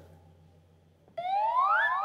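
About a second of near silence, then a loud pitched tone with several overtones glides steadily upward for most of a second, like a rising siren-like whoop.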